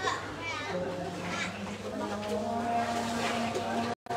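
Several people talking at once in the background, children's voices among them, over a steady low hum.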